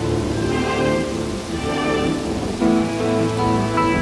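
Heavy rain pouring down steadily, under background music of held chords that change a couple of times.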